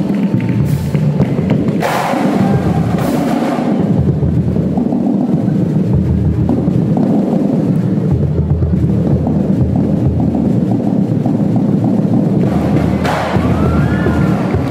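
Marching drumline of snare and bass drums playing a fast, dense cadence, with a few sharp crashing hits in the first few seconds and again near the end.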